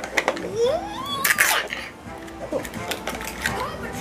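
Hands opening a Mini Brands plastic capsule, peeling apart its sticker-wrapped segments: a short crinkling rustle about a second in and a few small plastic clicks. A background voice and music play throughout.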